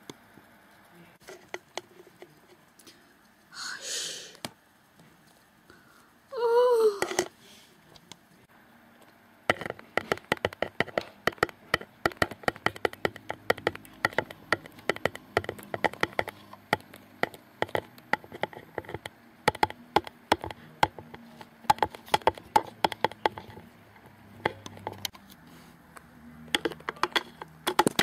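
Small plastic toy figures tapped and hopped on a wooden tabletop, a rapid, irregular run of sharp clicks that starts about a third of the way in and lasts until near the end. Earlier there is a short breathy hiss and a brief wavering high-pitched vocal squeal.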